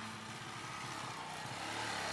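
Small motorcycle engine running as the bike rides towards the listener, slowly growing louder. The tail of background music fades out at the start.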